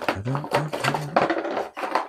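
A man talking in a small room, his words not made out.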